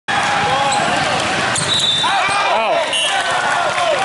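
Indoor volleyball rally in a big gym hall: many voices of players and spectators shouting and cheering, rising to a peak near the middle, with the thuds of the ball and short high squeaks, all echoing in the hall.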